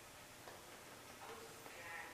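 Near silence: quiet room tone with a few faint, brief voice-like sounds in the second half.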